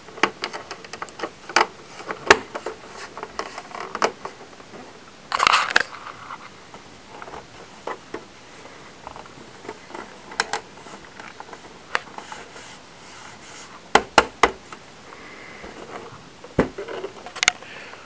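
InFocus ScreenPlay 7205 projector's plastic housing being handled and turned over: scattered clicks, taps and light scrapes, with a brief scraping rush about five seconds in and a few sharp knocks about fourteen seconds in.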